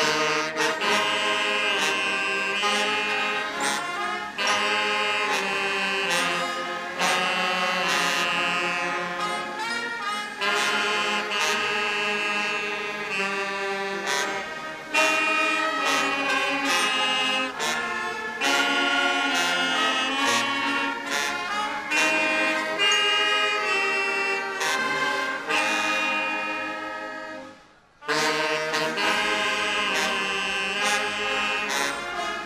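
Massed uniformed brass band playing an anthem. It stops briefly near the end and then begins again.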